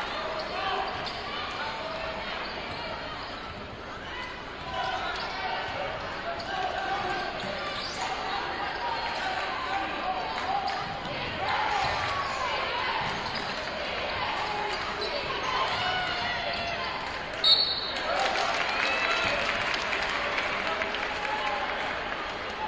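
Gym game sound during live basketball play: a basketball dribbled on the hardwood under the steady murmur of crowd voices. About three-quarters of the way through there is a short, sharp, high-pitched sound, followed by a slightly louder crowd.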